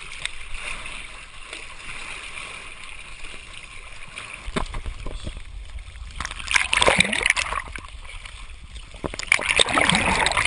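Rough, choppy open water splashing and sloshing right at a camera at the waterline, with a low rumble coming in about halfway. Two louder bursts of splashing follow, one in the second half and one near the end, as waves wash over the camera.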